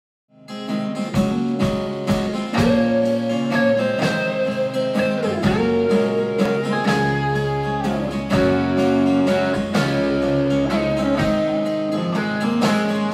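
Live band playing an instrumental intro: electric and acoustic guitars over drums and bass guitar, with a steady beat and some sliding guitar notes. The music starts just after the opening.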